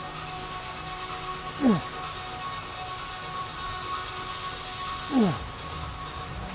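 A man groaning with effort during reps of a heavy upper-trap lift. There are two short groans, each falling in pitch, about three and a half seconds apart, over background music with steady held notes.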